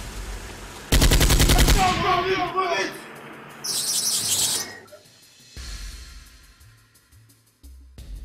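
A rapid burst of automatic rifle fire lasting about a second, the shots coming in quick succession, fired from a car window. A shorter, hissing burst follows a couple of seconds later.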